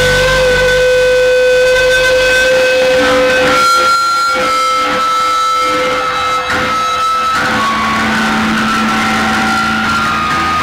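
Live rock band playing: electric guitars ring out with long held notes, the low end thins out after a couple of seconds, and several strummed hits come through the middle.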